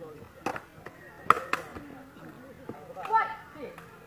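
A sepak takraw ball being kicked: a sharp knock about half a second in, then two more in quick succession just over a second in. Players' voices and a shout come near the end.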